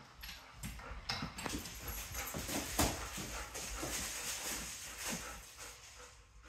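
A golden retriever's claws clicking and tapping irregularly on a hardwood floor as it moves about, with plastic parcel bags rustling.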